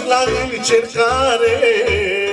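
Male singer holding an ornamented, melismatic vocal line through a microphone and PA, the pitch curling and bending without clear words, over band accompaniment with a steady low beat.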